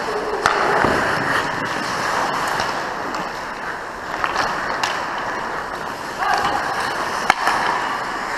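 Ice hockey skates scraping and carving the ice around the goal, with sharp clacks of sticks and puck; the loudest crack comes about seven seconds in.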